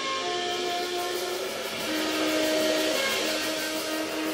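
Tenor saxophone playing long held notes that step down in pitch, over a steady wash of cymbals that comes in just after the start, in a free sax-and-drums duo improvisation.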